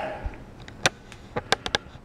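A quick run of about six short, sharp clicks in the second half, over a low background.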